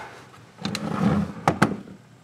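Rustling handling noise with two sharp clicks close together about one and a half seconds in.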